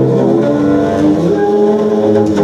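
Small upright bass (a midget bass) bowed hard, playing sustained low notes that change pitch a couple of times.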